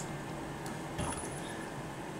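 A soft click about a second in, then a brief high, thin whine from the servo's DC motor drive as the proportional-gain loop is switched on, over quiet room noise.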